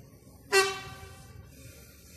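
A single short horn blast from an approaching GW Train Regio diesel railcar, starting sharply about half a second in and fading away within about a second.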